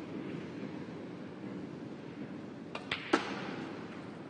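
Pool shot on a Chinese eight-ball table: three sharp clicks in quick succession about three seconds in, the cue tip striking the cue ball and balls knocking together, the last click the loudest, over the steady hum of the hall.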